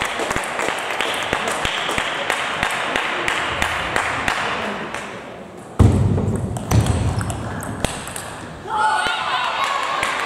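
Table tennis balls clicking off paddles and tables in a busy hall, a quick run of sharp ticks over a background of voices. A loud low thump comes about six seconds in, and a voice calls out near the end.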